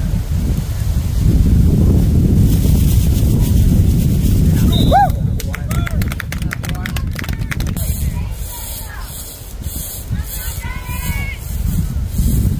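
Spectators' voices and shouts at a youth football game, with wind rumbling on the microphone. About five seconds in comes a brief high whistle, then a quick run of claps lasting a couple of seconds. Voices rise again near the end.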